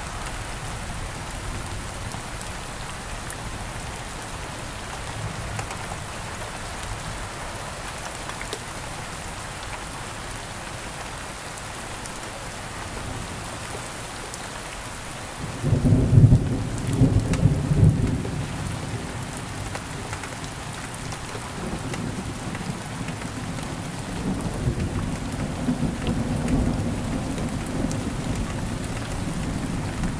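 Steady rain falling, with a clap of thunder breaking in suddenly about halfway through and rumbling for a few seconds, then low rolling thunder again near the end.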